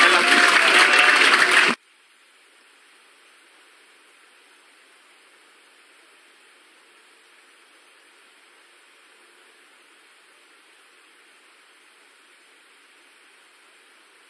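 A loud voice over a noisy background cuts off abruptly just under two seconds in, leaving a faint, steady hiss with no other sound.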